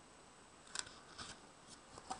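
Paper pages of a notebook being turned by hand: three faint, short papery flicks about half a second apart.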